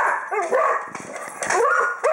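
A dog whining and yipping in a few short cries that rise and fall in pitch.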